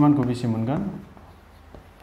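A man's voice for about the first second, then chalk writing on a blackboard.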